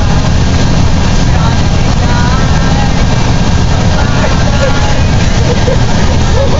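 Loud, steady engine and road rumble of a school bus driving along, heard from inside the passenger cabin, with girls' voices talking faintly over it.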